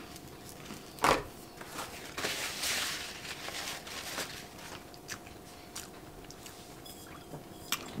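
A person chewing a crunchy rice cake topped with tuna, with one sharp crunch about a second in and soft mouth sounds after. A paper napkin rustles against the mouth in the middle.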